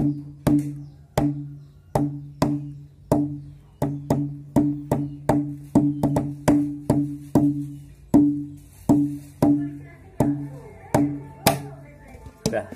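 Empty plastic mineral-water bottle struck with the hands as a makeshift hadroh frame drum, playing a rhythm of hollow, low, pitched booms with a short ring. It goes at about two to three strikes a second, closer together in the middle.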